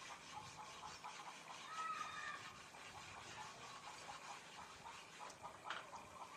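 A short animal call about two seconds in, faint against a steady background with light ticking, and a single sharp click near the end.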